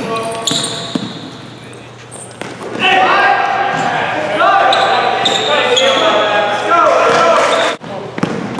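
Basketball game on a hardwood gym floor: a ball bouncing and footfalls at first, then from about three seconds in a loud run of pitched squeals that rise and hold, typical of sneakers squeaking on the court. The sound cuts off suddenly just before the end.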